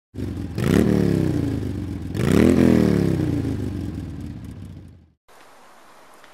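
Motorcycle engine revved twice, the pitch climbing sharply with each blip of the throttle and then falling away slowly as the revs drop, until the sound cuts off suddenly about five seconds in.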